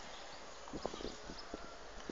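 Footsteps on a tiled terrace: a short run of irregular taps about a second in, over a steady outdoor background hiss.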